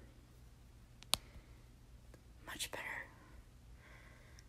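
A single sharp click about a second in, then a brief whisper a little after two and a half seconds.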